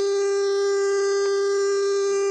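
Electronic dance music: one synthesizer note held steady, with no drums under it.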